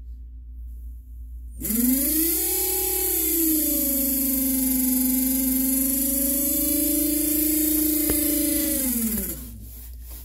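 Marco UP12 electric fresh water pump with Smart Sensor control starting on demand as a tap is opened: a steady electric hum that starts about a second and a half in, rises in pitch as it spins up, settles, and slides down in pitch as it stops a little before the end.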